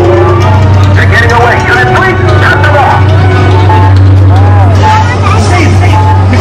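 Inside the E.T. Adventure dark ride: a loud, steady low rumble with the ride's soundtrack of music and voices playing over it.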